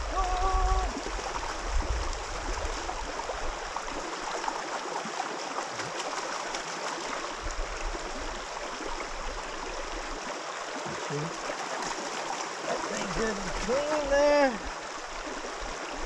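Steady rush of a shallow river flowing over gravel, with water sloshing in a bucket as a sluice's miner's moss mat is rinsed in it.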